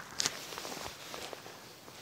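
Faint footsteps and rustling from a handheld phone being moved around, with a short hiss near the start.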